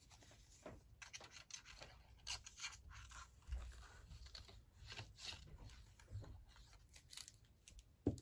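Faint rustling and light scraping of card stock being handled and slid across a craft mat, in scattered soft strokes.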